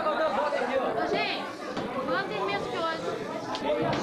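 Chatter of several people talking at once, voices overlapping.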